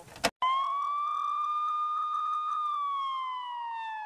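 Police siren wailing: one long tone that rises, holds steady, then falls slowly over the second half. A sharp click comes just before it at the very start.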